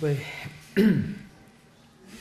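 A man clears his throat once into a lectern microphone, a short loud rasp that falls in pitch about a second in, right after the end of a spoken word.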